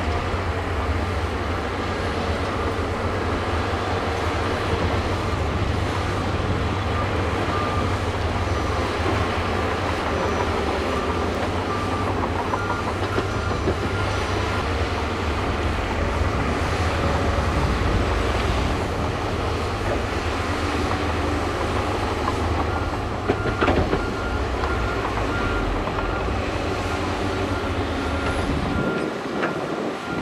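Heavy diesel engine of a Shantui crawler bulldozer running steadily under load while pushing dirt, with a deep rumble. About two-thirds of the way in, a repeating beep, about one a second, joins it, and there is a short metallic clank.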